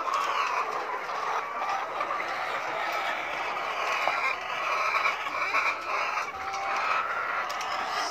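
A flock of 21-week-old caged laying hens clucking and calling together in a steady, busy chorus, with a few light clicks over it.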